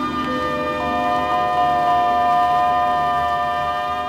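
Mambo orchestra's closing chord on a 45 rpm record: wind instruments hold a long chord over low percussion, with two more notes joining in during the first second, then the chord cuts off.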